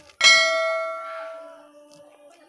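A single bell-like ding from a subscribe-button animation sound effect, starting suddenly and ringing down over about a second and a half.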